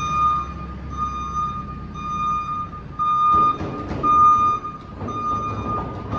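Telehandler's electronic warning beeper sounding in long, even beeps about once a second, over the low rumble of the machine's engine.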